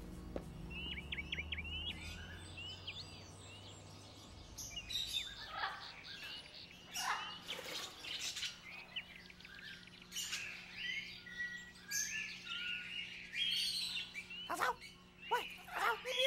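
Many caged birds chirping and calling: a few chirps about a second in, then a dense, overlapping chorus of short chirps and whistles from about five seconds on, with louder calls near the end.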